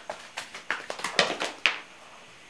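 A deck of oracle cards being shuffled by hand: a quick, irregular run of sharp card clicks and slaps that stops shortly before the end.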